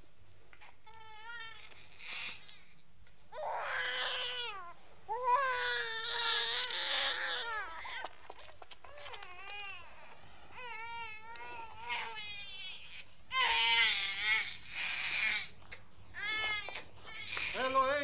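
Newborn baby crying in a series of wavering, high-pitched wails of one to three seconds each, with short breaks between. The crying is loudest in the middle and toward the end.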